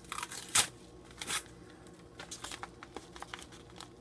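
A padded paper mailer being torn open: a sharp tear about half a second in, another just after a second, then lighter crinkling of the paper.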